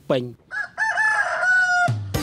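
A rooster crowing once: a few short rising notes run into one long held note that ends just before two seconds.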